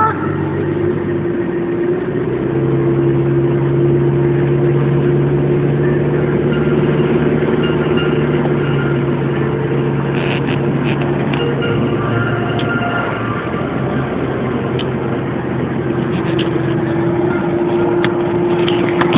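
Toyota car's engine running steadily while driving, a constant hum whose low note grows stronger a couple of seconds in and eases off about two-thirds of the way through.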